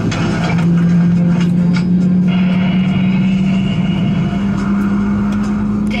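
Boeing 767-300's jet engines heard from inside the cabin while taxiing: a loud, steady low drone whose pitch creeps slightly upward, with a higher whine joining about two seconds in.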